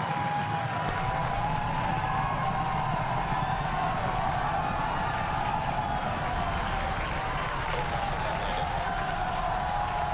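A crowd cheering and applauding loudly and steadily, many voices shouting together, greeting the two Falcon Heavy side boosters' touchdowns; a low rumble runs underneath from about a second in.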